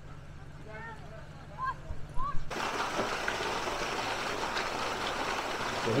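Large water-truck hose pouring a heavy stream into an above-ground pool: a loud, steady rush and splash that starts abruptly about two and a half seconds in. Before that, a low steady hum from the truck's engine, with faint distant voices.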